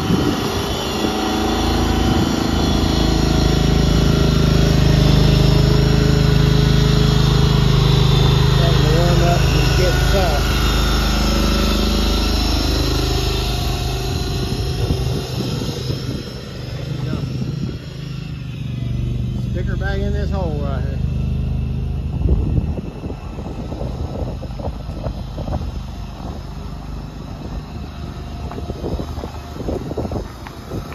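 Engine of a shed mover running steadily as it moves a portable building, loudest in the first half and fading away after about fifteen seconds.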